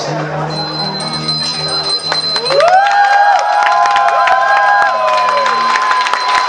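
A live band's closing held chord with a bell-like chime ringing over it, then guests breaking into clapping and cheering about halfway through as the music holds its last notes.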